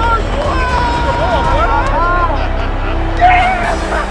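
Men shouting and whooping excitedly over the steady noise of a stadium crowd, with a louder burst of yells about three seconds in.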